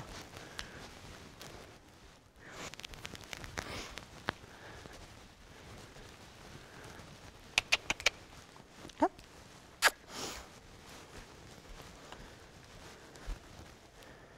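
Soft footsteps and rustling in straw bedding, with a quick cluster of sharp clicks, a brief rising squeak and another click about eight to ten seconds in.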